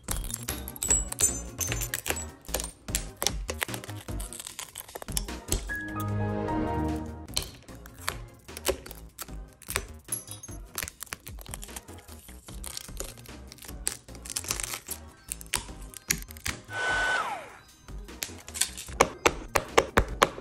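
Shattered phone glass being chipped and scraped off with a metal blade: many sharp cracks, crunches and clicks, over background music.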